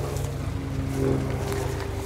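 A tractor's engine running steadily, a low even drone with a clear pitch.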